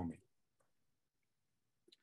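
Near silence in a pause between words, with a couple of faint clicks from a computer mouse.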